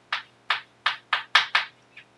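Chalk striking and scratching on a blackboard while writing: six short, sharp strokes in quick succession.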